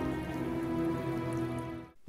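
Horror film score: a sustained, held chord over a faint hiss, fading out just before the end.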